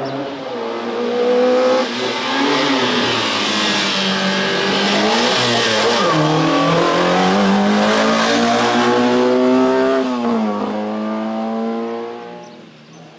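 Peugeot 205 slalom car's engine revving hard on a slalom run, its pitch climbing and falling again and again as the throttle is lifted and reapplied, with a sharp drop and fresh climb near the end.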